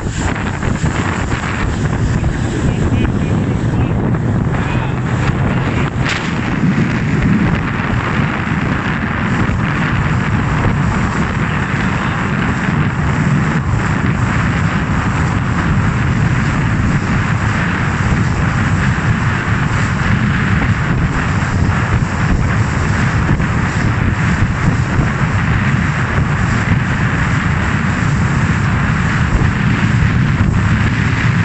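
A motorboat running steadily at speed: a continuous engine drone mixed with wind on the microphone and water rushing past the hull.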